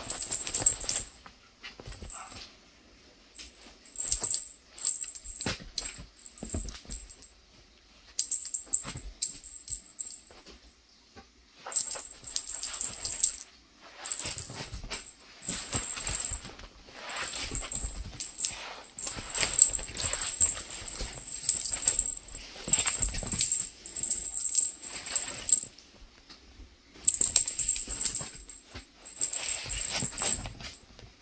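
A kitten playing with a toy on a bed: irregular bursts of rustling and light, high jingling, a second or two long, with short quiet gaps between them.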